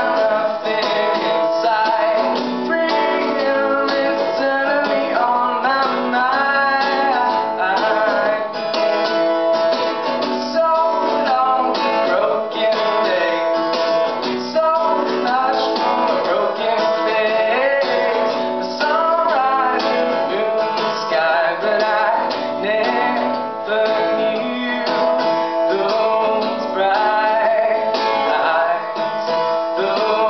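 Steel-string acoustic guitar strummed in a steady rhythm, with a man's voice singing over it at times.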